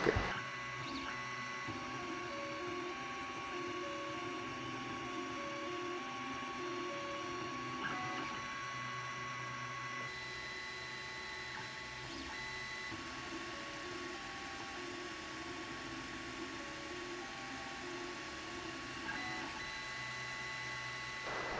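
Ender-3 Pro 3D printer working as a vinyl cutter, its stepper motors whining in short tones that jump from pitch to pitch as the blade head traces the sticker outline, over a steady fan tone.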